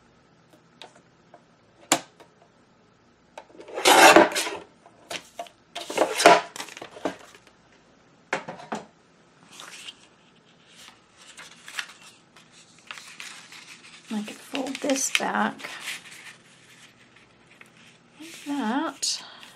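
Sliding-blade paper trimmer cutting a sheet of paper: a click of the trimmer, then two loud swishing strokes about two seconds apart as the blade runs along the sheet. Later the paper is handled and folded, rustling for a few seconds near the end.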